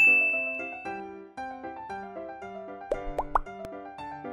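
A bright chime-like "ding" sound effect rings out at the start and fades over about a second, over light, cheerful background music. About three seconds in come a few quick clicks and two short rising "bloop" effects.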